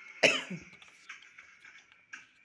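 A person coughs: one sharp, loud cough, with a smaller one right after it. Faint small clicks follow.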